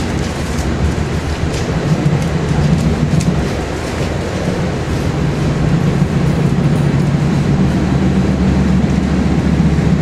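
Inside a moving Shore Line East commuter train coach: a steady low rumble of the wheels and running gear on the rails, with a few faint clicks.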